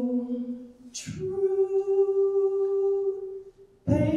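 A woman singing unaccompanied in long held notes with no words made out. A short hiss comes about a second in, then one steady note lasts over two seconds, and a new note starts near the end.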